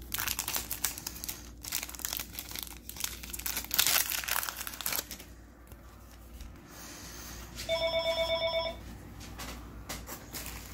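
A foil Yu-Gi-Oh booster pack wrapper being torn open and crinkled for about five seconds, loudest around four seconds in. Near the end, a phone's ringer trills in a rapid warble for about a second.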